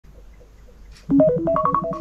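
iPhone alarm ringing: a quick melodic run of short, stepped notes that starts about a second in.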